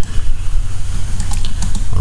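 A few scattered clicks of a computer keyboard over a steady low hum.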